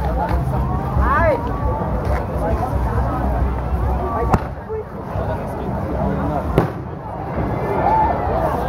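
Crowd of people chattering, with two sharp bangs from fireworks going off, one a little over four seconds in and another about two seconds later.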